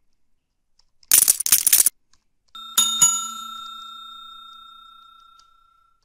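Subscribe-button overlay sound effect: a short loud noisy burst about a second in, then a bell ding at about two and a half seconds that rings and fades away over nearly three seconds.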